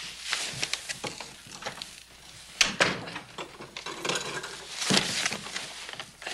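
Footsteps on a wooden floor and the knock of a door, a string of separate knocks, the two loudest about two and a half seconds in and again near five seconds.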